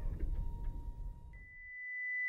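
A faint low rumble with a thin steady tone, then a single high, pure steady tone that comes in about two-thirds of the way through and swells louder toward the end.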